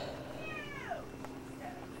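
A single short, high-pitched call that falls steadily in pitch, lasting well under a second, with a faint steady hum beneath.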